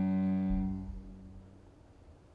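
Cello playing one long bowed note that stops about half a second in and rings away within the next half second.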